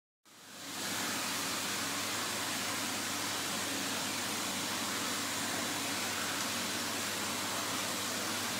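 Steady rushing background noise of a fish hatchery with a faint low hum, fading in over the first second and holding level.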